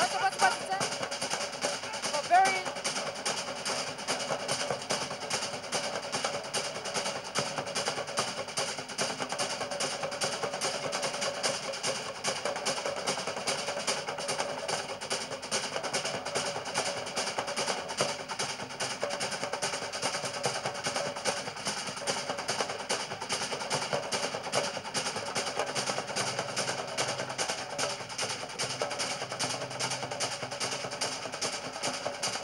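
Rapid, steady drumming, the percussion accompaniment of a Samoan fire knife dance, with two brief shouts near the start and about two and a half seconds in.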